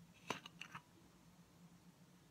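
Screw cap being twisted off a glass olive oil bottle: one sharp click about a third of a second in, then a couple of lighter clicks just after, all faint.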